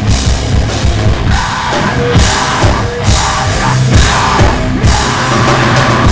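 Live heavy rock band playing loud: electric guitars over a drum kit keeping a steady beat with cymbals.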